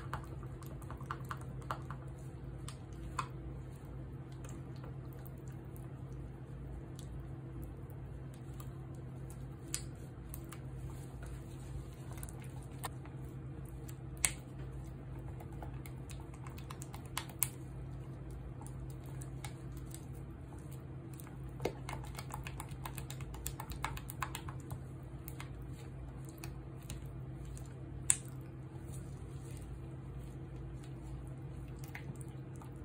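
Silicone spatulas stirring and scraping very thick cold-process soap batter in plastic pouring cups, with scattered light clicks and taps against the cup walls over a steady low hum. The batter has thickened so far that it is hard to stir.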